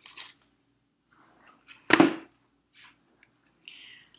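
Big Shot die-cutting plates set down on the work table: one sharp, loud clack about halfway through, with a few light clicks of handling before it and a short rustle near the end.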